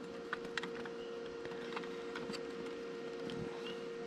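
A few faint, scattered clicks of a hand screwdriver working the small screws of a tachometer circuit board, over a steady hum.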